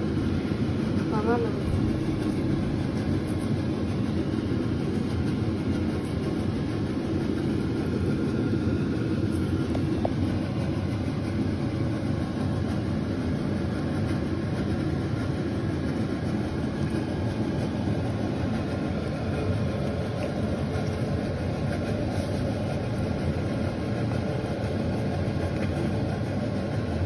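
A steady, low, machine-like hum that runs without change.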